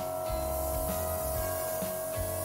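Steady hiss of an airbrush spraying paint, over background music with a steady beat.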